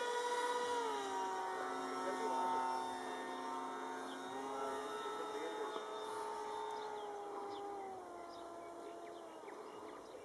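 Electric brushless outrunner (2208, 1800 kV) driving a 7x4 folding propeller on an RC flying wing in flight: a steady motor whine with several overtones. Its pitch drops about a second in, rises a little around four seconds and drops again near eight seconds as the throttle is changed, and it grows fainter toward the end.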